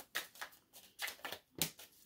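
A deck of oracle cards being shuffled by hand: a string of short, soft paper flicks, unevenly spaced.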